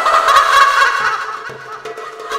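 A woman's loud, wild, high-pitched laugh, loudest in the first second and then fading, with light drum hits coming in about a second in.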